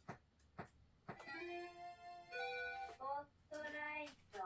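A short loud music jingle: a ticking beat about twice a second, then from about a second in a melody of held notes that step between several pitches.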